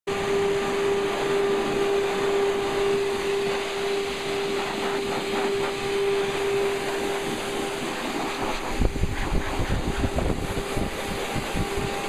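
Blow dryer running steadily with a constant whine while drying a dog's coat. From about two-thirds of the way in, its air blast buffets the microphone in uneven low rumbling gusts.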